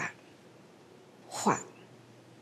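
Speech only: a single short syllable of an elderly woman's soft, slow speech, falling in pitch, about a second and a half in, between pauses; otherwise quiet room tone.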